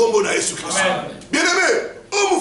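Speech only: a man praying aloud in a raised voice, in two phrases with a short break between them.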